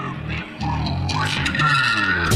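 Background music track with guitar and bass, swelling louder about half a second in.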